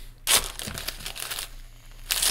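Gift wrapping paper being torn and crinkled off a boxed present by hand, a run of rustling rips starting about a quarter second in.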